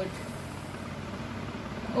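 Steady background noise, a low, even rumble with no distinct events.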